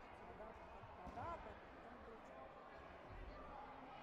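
Faint ambience of a large sports hall: distant voices, with a few dull low thumps.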